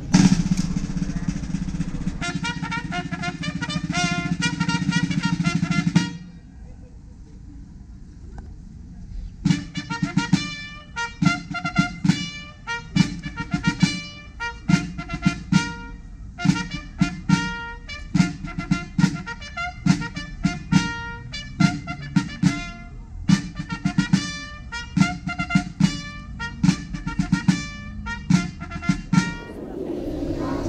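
Brass instruments playing ceremonial music. It opens with a held, sustained passage, dips into a short lull, then runs on in quick, crisp, detached notes.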